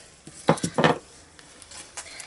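Craft scissors set down on the desk: two quick clatters about half a second apart, near the start.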